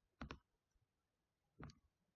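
Faint computer mouse clicks: a quick double click about a quarter second in, then a single click near the end.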